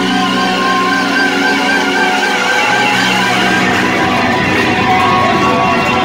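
Live heavy metal band playing at full volume, with an electric guitar lead of held, wavering notes over the band, recorded in a club.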